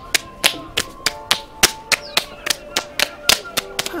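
Two children's hands clapping together in a hand-clapping game, a quick even rhythm of about three sharp claps a second.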